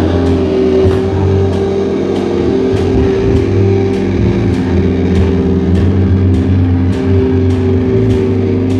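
A live heavy rock band playing loud: distorted electric guitar and bass holding a sustained, droning chord over a heavy low end, with a cymbal struck steadily a little under twice a second.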